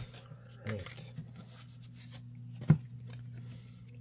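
Faint handling of a stack of paper trading cards, a card slid from the front to the back of the stack, over a steady low hum, with one sharp tap a little past halfway.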